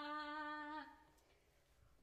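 A woman's voice holding one steady note for about a second, the drawn-out end of a spoken greeting ("konbanwa"), then fading to near silence.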